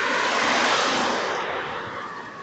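An older Mercedes-Benz saloon driving past close by, its engine and tyre noise swelling and then fading away in the last half second.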